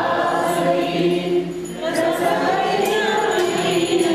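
A group of people singing together, several voices at once, with a few short high clicks or jingles through the singing.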